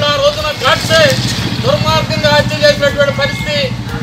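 A person's voice speaking or calling out, with an engine starting to run steadily underneath about one and a half seconds in.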